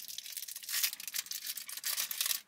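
Clear plastic wrapper around a chocolate crinkling between the fingers: a steady run of small crackles.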